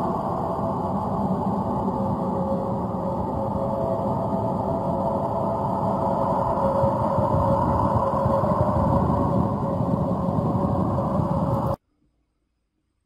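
Space sound recording played back from a video, presented as the sound of Jupiter: spacecraft radio or plasma-wave data turned into audio. It is a steady, loud droning rumble with a faint held tone, and it stops abruptly just before the end.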